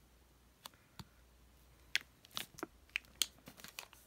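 Soft plastic packaging of a wet-wipes pack crinkling as it is handled and moved: a couple of faint ticks, then about halfway through a run of short crinkles and clicks.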